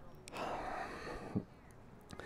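A man's breath, a soft exhale close to the microphone, followed about a second and a half in by a short soft knock.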